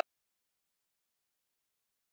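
Silence: a sustained shout cuts off abruptly at the very start, leaving dead digital silence.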